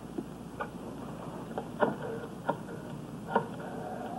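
Scattered sharp clicks and knocks, about five in all, as a desk telephone's handset is taken up from its cradle and handled. Two are followed by a short faint ring.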